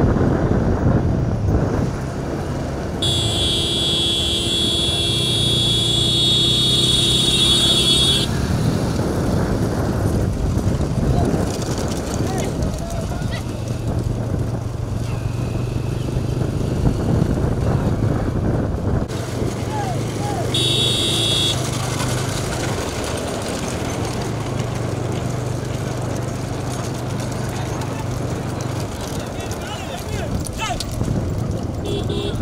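Motorcycle engine running, with voices shouting over a constant rush of noise. A steady high tone sounds from about three seconds in for five seconds, and again briefly about twenty seconds in.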